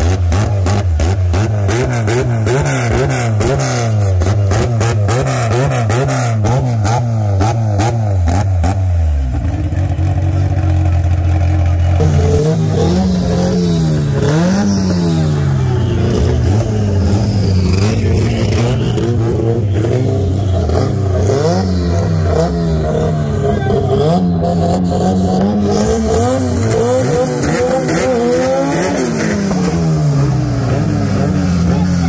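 Street drag cars' engines revving hard at the start line. The revs bounce rapidly up and down for about the first nine seconds, then rise and fall in slower blips.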